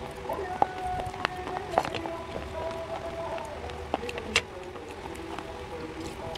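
Dry clay and slate pencil crunching: a few sharp, isolated cracks, the clearest a little after four seconds, under faint background music.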